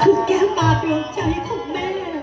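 Live music accompanying a Thai likay performance: a wavering melody line over low drum strokes, with drum hits near the start and twice more about a second in.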